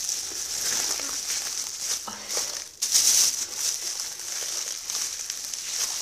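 Air being sucked out of a plastic bag of vegetables to close it airtight: a steady hiss with plastic crinkling, in two long draws with a brief break about three seconds in.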